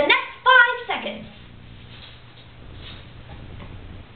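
A woman's brief high-pitched vocal cry in the first second, then low, steady room noise with faint handling sounds.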